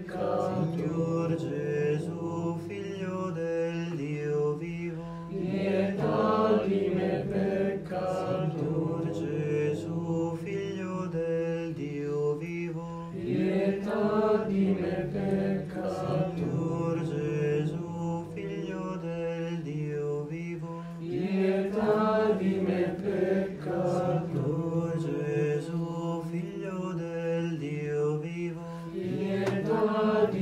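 Chanting voices singing over a steady, held low drone note, as background music.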